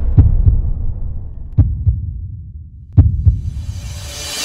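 Heartbeat sound effect in a video soundtrack: three double thumps, each pair a quick beat-beat, about a second and a half apart, over a low rumble that fades out.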